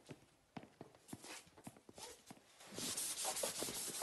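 Scattered light footsteps and knocks, then from about two and a half seconds in a steady scratchy rubbing at a chalk blackboard.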